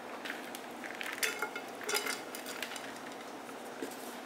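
Food cooking in oil in a nonstick skillet: a faint, steady sizzle with scattered clicks and taps of a utensil against the pan.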